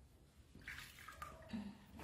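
Water sloshing and splashing softly in a small plastic basin as a baby monkey is washed by hand, with a short splash about halfway through. A brief low hum follows near the end.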